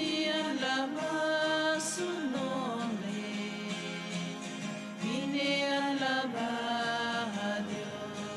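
A slow hymn sung in long held notes that slide from one pitch to the next, over a steady sustained accompaniment: the entrance hymn of the Mass.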